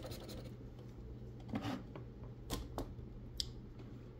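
A large metal coin scraping the coating off a scratch-off lottery ticket: a quick run of fine scratching at the start, then four short, separate scrapes.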